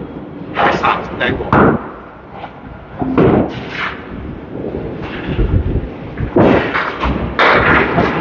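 Candlepin bowling alley din: scattered thuds and clattering crashes of balls and pins from the lanes, mixed with people talking.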